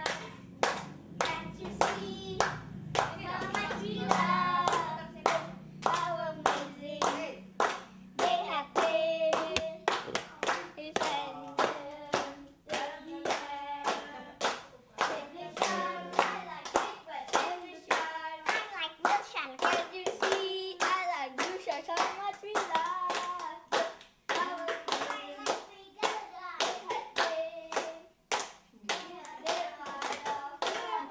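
A group of people singing together while clapping steadily in time, about two claps a second.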